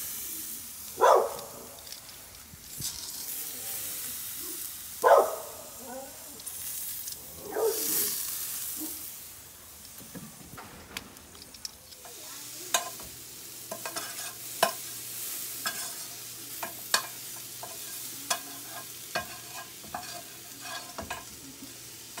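Steaks sizzling on a gas grill as metal tongs lift them off the grates, with a few loud sharp scrapes in the first half. In the second half comes a run of light clicks and taps as the tongs set the steaks down, over a faint steady hum.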